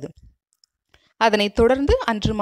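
A narrator's voice speaking Tamil stops, there is about a second of near silence, and the speech starts again a little past the middle.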